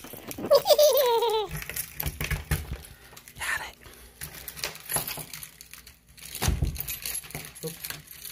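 Keys jingling and clinking with rustling handling noise as a door lock is worked and will not open yet, with a dull thump about six and a half seconds in.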